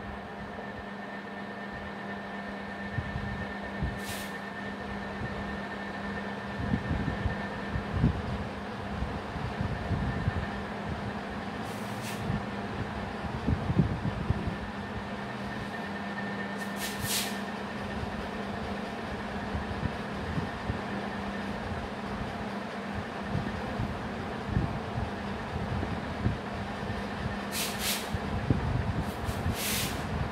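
Steady mechanical hum and hiss with a few irregular low thumps. A handful of brief, high scratchy sounds come from a marker writing on a whiteboard.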